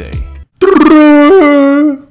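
A man's loud, drawn-out howl in imitation of a Yeti's call, held on one pitch for over a second with a brief upward break in the middle before it cuts off.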